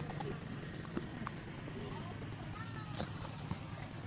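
Outdoor forest ambience: a steady background hiss with faint voices, a few light snaps or knocks about a second in and near three seconds, and a brief high hiss around three seconds.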